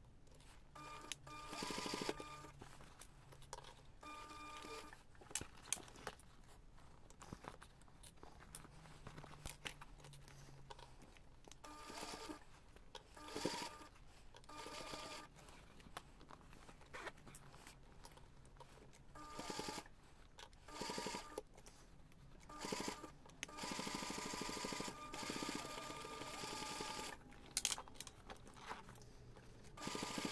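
Domestic sewing machine stitching a seam through layered fabric in short runs of a second or two, stopping and starting, with a longer run near the end. A few sharp clicks fall in the pauses.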